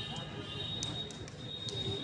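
Faint low voices with a few light handling clicks from a handheld microphone, over a steady faint high-pitched tone from the public-address system.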